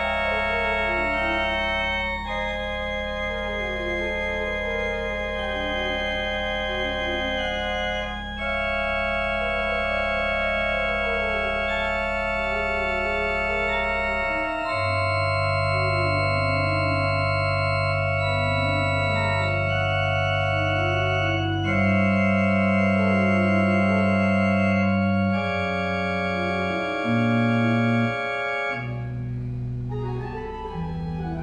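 Organ playing a slow piece: sustained chords over long held bass notes, with a moving line in the middle. The bass note changes a few times and briefly drops out shortly before the end.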